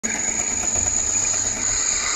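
Pillar drill running with its bit cutting into a steel flywheel: a steady, loud, high-pitched whine over a hiss and the low hum of the drill.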